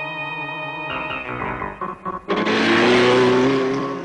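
Cartoon background music. About two seconds in, a loud rushing vehicle sound effect with a rising engine-like tone takes over: cartoon vans speeding off.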